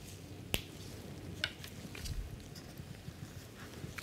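Light handling noises of small plastic lab items (a dropper and a test cassette) in gloved hands: one sharp click about half a second in, a weaker click about a second later, and a few faint ticks.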